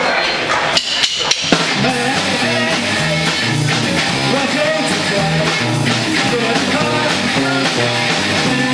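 Live rock band starting a song: a few sharp drum hits about a second in, then electric guitar, bass and drum kit playing a steady riff together.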